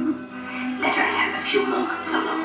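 A 16mm film's optical soundtrack played through a Bell & Howell projector's speaker: orchestral music dies away at the start, then brief, unclear voices come in about a second in.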